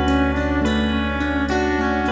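Live band playing an instrumental passage: fiddle bowing a melody and electric guitar picking notes over a steady, held bass note.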